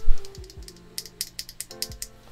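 A loose Gateron Speed Silver linear keyboard switch pressed repeatedly between the fingers: a quick run of light taps as the stem bottoms out and springs back.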